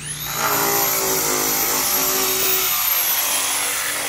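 Electric angle grinder with a sanding disc spinning up and running against pool plaster, a high steady whine over a grinding rasp; a second rising whine joins about two and a half seconds in.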